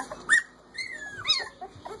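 Three-week-old Corgi puppies crying: several short, high calls that slide up and down in pitch.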